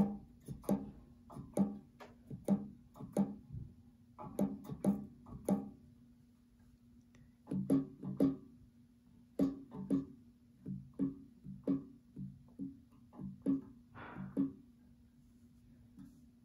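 Euphonium piston valves pressed and released by hand without the horn being played: quick clicks in irregular runs with short pauses, each giving a brief low ringing note.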